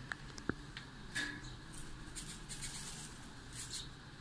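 Faint handling sounds at a steel saucepan of milk: a sharp click about half a second in, then a few soft, brief scratchy rustles.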